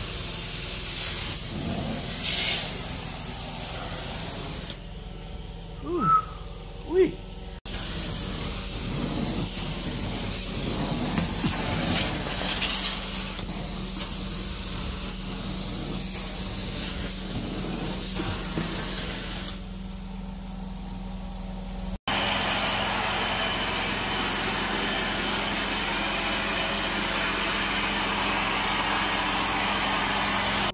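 Carpet extraction wand drawing water and air out of a carpet, a steady hissing suction. The sound breaks off and changes character at cuts between shots, with two brief louder sounds about six and seven seconds in.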